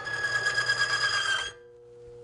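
Steel test bearing loaded against the spinning, oil-flung roller of a lever-arm lubricity tester (Falex/Timken-type "one-arm bandit"), giving a loud, high, wavering metallic squeal as the arm pressure builds. The squeal cuts off suddenly about one and a half seconds in as the load stops the roller, leaving a faint steady hum.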